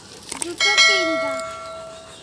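Subscribe-button animation sound effect: a short click, then a bell chime that rings out and fades over about a second and a half.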